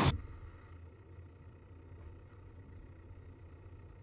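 Pop music cuts off abruptly at the start, leaving faint room tone with a low, steady hum.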